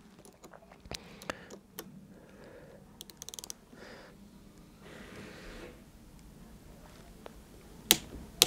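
Faint clicks of a Wera Click-Torque wrench ratcheting a battery cable lug bolt tight, with a quick run of ratchet clicks about three seconds in and a sharper click near the end as the wrench reaches its set 6 newton-metres.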